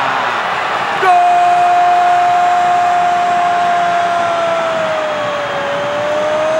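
A Brazilian TV football commentator's long, held goal shout, a stretched-out "gooool" on one sustained note. It starts about a second in and holds for over five seconds, dipping slightly in pitch near the end, over steady crowd noise.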